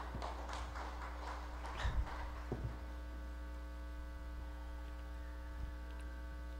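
Steady electrical mains hum on the microphone's sound feed, with a couple of faint low thumps about two seconds in.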